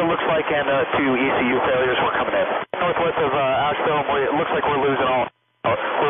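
A pilot's voice over air-traffic-control radio, thin and cut off in the treble, reporting an oil pressure failure and the loss of all engine power to the tower. The transmission breaks briefly about three seconds in and again shortly before the end.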